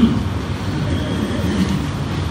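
A steady low rumbling background noise with no distinct events.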